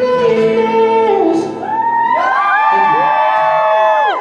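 End of a live acoustic song: a male voice holds a sung note, then from about halfway through several voices overlap in whoops and cheers that trail off at the end.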